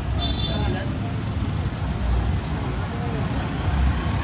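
Car engines running at low speed in slow street traffic, a steady rumble under the chatter of many voices. A brief high tone sounds near the start.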